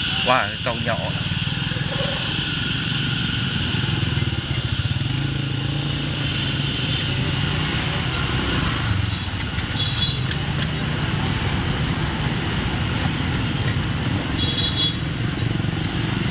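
Street traffic with motorbikes passing close by: a steady low engine rumble, with two short high beeps, one about ten seconds in and one near the end.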